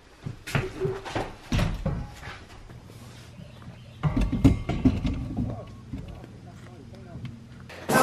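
Scattered knocks and clatter of a welded steel tube frame being handled and carried, with a louder, lower-pitched stretch of handling about halfway through.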